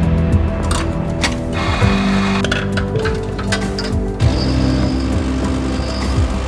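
Instrumental background music: held low notes that change every second or so, with sharp clicks and ticks over them.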